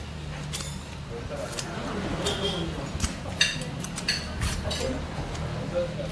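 Scattered clinks and taps of tableware (plates, glasses, utensils), a couple of them ringing briefly, over a steady low hum.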